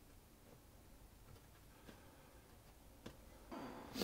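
Near silence with a few faint light ticks and a brief soft rustle near the end: quiet handling sounds of a pastry brush and small glass bowl as orange syrup is brushed over friands on a wire rack.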